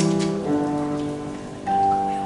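Grand piano playing slow, sustained chords, a new chord struck about half a second in and another near the end.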